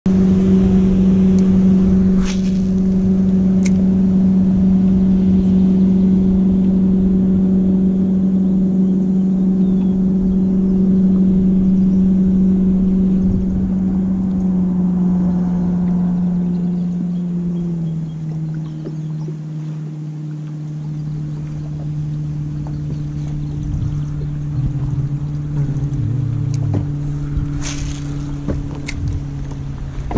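A small boat's motor running steadily as the boat moves through the water, with a steady hum that drops a step lower about eighteen seconds in as the motor is slowed. A couple of short knocks come near the start and near the end.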